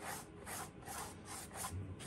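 Stiff bristle brush scrubbing back and forth over a gritty stone-textured painted track surface, in short scratchy strokes about three a second, dry-brushing black paint on to darken a racing line.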